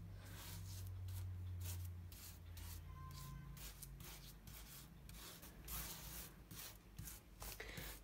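Faint scraping and rubbing of a metal spoon spreading a thick cinnamon-sugar and butter paste over a sheet of puff pastry, in many short, repeated strokes.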